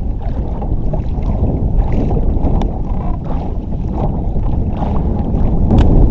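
Wind buffeting the microphone over choppy water lapping against a low layout boat, a loud, steady rumble. Near the end it swells, with a couple of sharp cracks.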